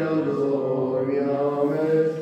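A male voice sings Armenian liturgical chant of the morning office in long, slowly moving notes. The high, steady ring of a struck bell carries on behind it.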